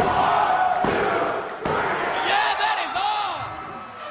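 Referee's hand slapping the wrestling ring mat twice, about a second apart, for a pinfall count, over a crowd yelling along. Steady music tones start near the end as the sound fades.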